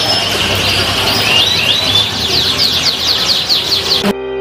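Canaries singing: a continuous, fast run of short sweeping whistles and trills, repeated over and over.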